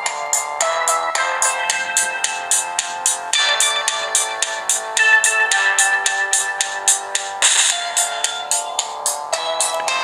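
A music track playing through the Ekoore Ocean XL phablet's built-in loudspeaker, with sustained notes over a fast, regular beat and almost no bass. The sound quality is good, but the volume could be a little higher.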